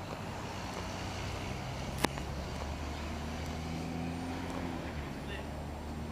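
A steady low engine hum, with a single sharp click about two seconds in.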